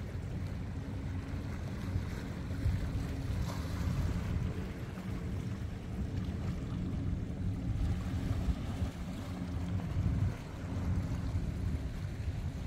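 Wind buffeting the camera microphone on an open seashore: an uneven low rumble that rises and falls in gusts, with a brief lull near the end.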